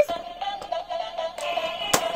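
A thin, steady electronic tune from a light-up spinning top toy's built-in sound chip, with one sharp click near the end.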